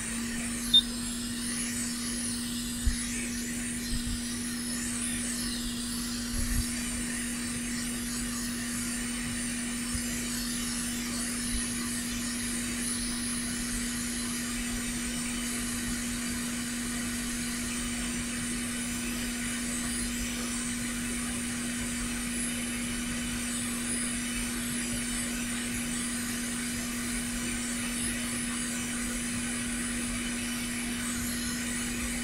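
Hot air rework station handpiece blowing over the pins of a smart card connector to melt their solder: a steady fan hum with rushing air hiss. A few small clicks come in the first several seconds.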